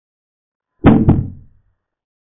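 Chess board software's piece-capture sound effect: two quick knocks about a quarter second apart, fading fast, marking a knight taking a pawn.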